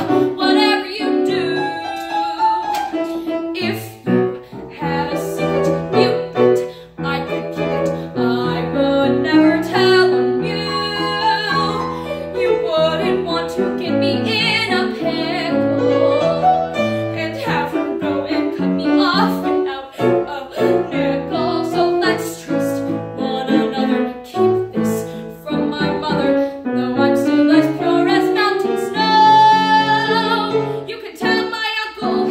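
A young woman singing a show tune, accompanied on grand piano. Near the end she holds a long sustained note.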